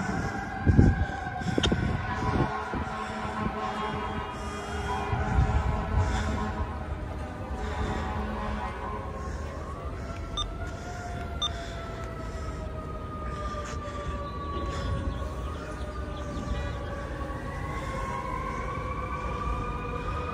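Fire apparatus sirens wailing, several overlapping tones sliding slowly down in pitch, with one climbing again near the end. A few low thumps in the first few seconds.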